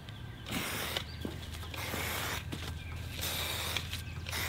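Aerosol marking paint sprayed from a can on a wand in short hisses, three of them about a second apart, as bed outlines are painted onto bare dirt. Footsteps and faint bird chirps sound between them.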